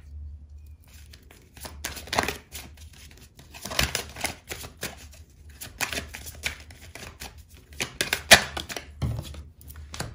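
Tarot cards being handled and drawn from the deck, a run of short snaps and taps as cards are flicked and laid down on a marble tabletop, the sharpest about eight seconds in, over a low steady hum.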